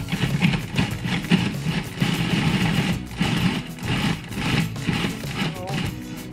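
Electric food processor running, its blade chopping chunks of torn bread into fresh breadcrumbs, with background music.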